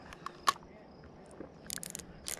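Faint clicks from a spinning fishing reel being handled: a few single clicks, the sharpest about half a second in, then a quick run of ticks near the end.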